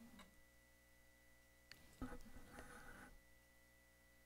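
Near silence: room tone in a lecture room, with a faint click near the middle and a brief faint sound about two seconds in.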